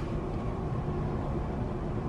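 Steady background hum and hiss inside a cruise ship cabin: the ship's room tone.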